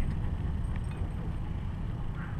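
Wind buffeting the microphone as a steady low rumble, with a few faint ticks.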